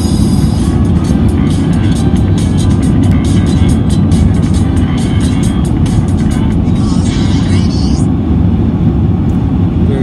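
Steady, loud car-cabin road and engine rumble while driving, with music and a voice from a video playing over it. A brief hissy burst comes near the end.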